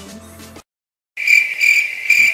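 Cricket chirping sound effect: three loud, high chirps that cut in suddenly after a moment of dead silence, the stock 'crickets' gag for an awkward pause.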